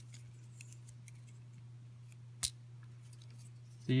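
A single sharp plastic click about two and a half seconds in, typical of a three-pin cable connector snapping into a Dynamixel servo's port, amid faint handling clicks over a low steady hum.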